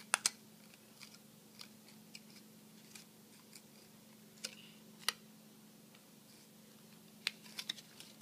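Thin plastic of a cut bottle clicking and crinkling now and then as its petals are bent and curled around a wooden chopstick, with a few sharp clicks a little after the start, about five seconds in and near the end. A faint steady hum runs underneath.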